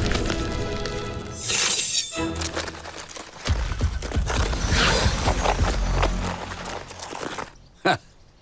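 Cartoon sound effects over orchestral-style background music: a whoosh about a second and a half in, then crackling and shattering like ice forming over a low rumble from about three and a half to six seconds. The sound dies away just before the end.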